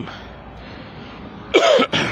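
A single loud cough close to the microphone about a second and a half in, after a stretch of low steady outdoor background noise.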